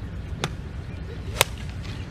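A mid iron strikes a golf ball: one sharp crack about one and a half seconds in, with a fainter click about a second earlier, over a steady low background rumble.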